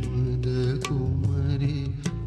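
A man singing a slow, chant-like melody over the steady reedy sound of a harmonium, with a few sharp drum strokes.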